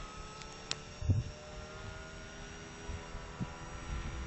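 Distant drone of the radio-controlled Decathlon tow plane's engine, a steady tone whose pitch sinks slowly. A low bump about a second in.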